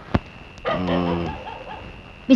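A single sharp knock, then a man's low drawn-out groan lasting under a second, over a faint steady high-pitched tone.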